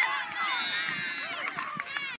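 Several high-pitched voices shouting and cheering at once, overlapping yells that swell about half a second in and carry on through the run.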